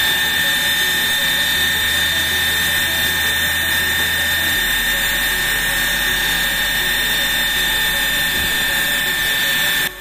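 Homemade steam turbine running on a steady jet of steam: a loud, even hiss with a steady high whine, driving a belt-coupled DC motor used as a generator. The sound cuts off suddenly near the end.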